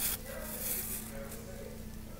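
Felt-tip permanent marker tracing around fingers on paper: a faint, uneven scratching of the tip on the sheet, with a short sharp sound right at the start.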